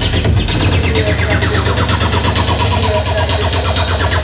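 Loud techno from a DJ set played over a club sound system, with a steady bass line under a dense, noisy upper layer.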